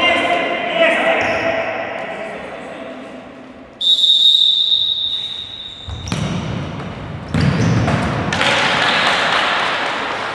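Futsal in an indoor hall: voices at first, then a referee's whistle held for about two seconds, a sharp thud of the ball being struck about six seconds in, and a loud crowd cheer rising from about eight seconds in, in the echo of the hall.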